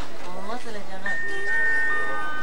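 Background voices briefly, then about a second in a three-note descending chime: clear tones starting one after another, high to low, and ringing on together.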